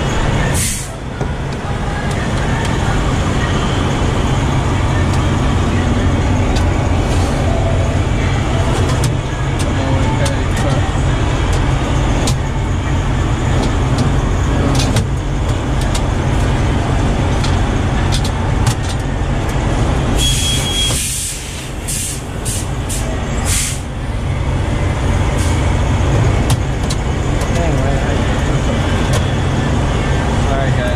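A heavy truck's diesel engine idling steadily, with clinks and knocks of metal toolbox drawers being handled and a few short bursts of hiss between about 20 and 24 seconds in.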